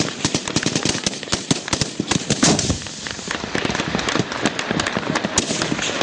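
Sustained, irregular small-arms gunfire: many overlapping shots, several a second, with a denser, louder cluster about two and a half seconds in.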